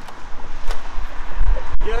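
Low, distorted rumble of traffic from a busy main road, building to a peak in the second half, with a single light click about two-thirds of a second in.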